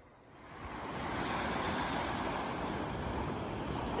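Sea surf breaking and washing onto a sandy beach, fading in over the first second and then a steady wash of waves.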